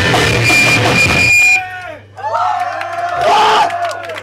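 A live band's loud, dense heavy music, with a held high tone over it, cuts off abruptly about a second and a half in. Then come whoops and yells from the audience, rising and falling in pitch, over a low steady hum.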